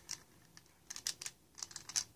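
A rabbit nibbling at a hard plastic toy: faint, quick, irregular clicks of teeth on plastic, most of them bunched in the second half.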